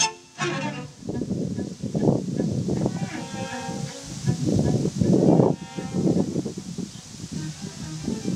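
String quartet of violins, viola and cello playing classical chamber music, bowed, in swelling phrases.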